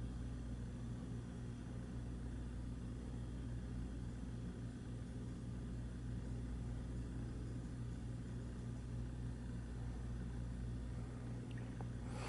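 Steady low hum with a faint hiss underneath: constant background room noise. A couple of faint ticks about a second before the end.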